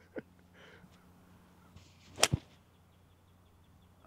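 A seven iron swung through and striking a golf ball: a faint swish, then one sharp crack of clubface contact a little past halfway.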